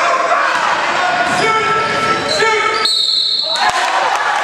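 Sounds of an indoor youth basketball game in an echoing gym: a ball bouncing on the hardwood, sneakers squeaking and spectators' voices. About three seconds in comes a short shrill referee's whistle, the loudest sound.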